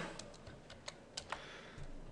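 Faint computer keyboard keystrokes: about half a dozen separate, sharp key clicks spread over the first second and a half.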